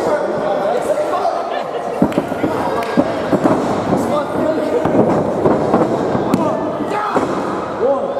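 Crowd voices talking and shouting in a gym hall, with several sharp thuds from bodies hitting the wrestling ring mat spread through the middle.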